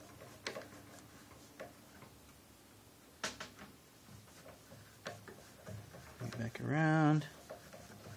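Scattered light clicks and taps as fingers feed a steel double bass string through the tuning peg in the peg box. A short wordless vocal sound comes about seven seconds in.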